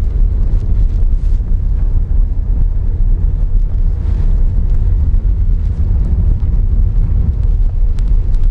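Steady low rumble of a car driving on an unpaved dirt road, heard from inside the cabin: tyre and engine noise with the body shaking over the surface.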